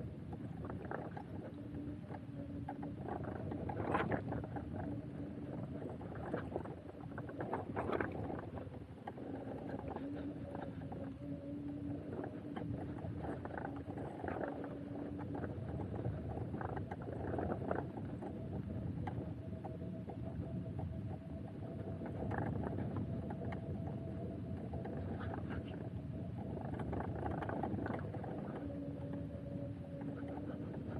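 Electric bike riding over a rutted dirt forest track: steady tyre and frame rumble with sharp jolts over bumps, and a pitched motor hum that comes and goes.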